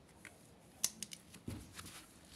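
Several sharp clicks, the loudest just under a second in, with a dull thump about halfway through: handling and tool contact at the back panel of a washing machine.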